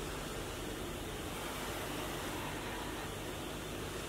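Steady, even hiss of room tone, with no distinct events.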